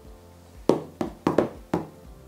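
Four sharp knocks on the top of a cardboard shipping box, struck by fingers, at uneven intervals in the second half, over quiet background music.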